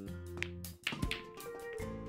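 A cue stick strikes the cue ball with a sharp click a little under a second in, followed by pool balls clicking together as the rack breaks, over background music.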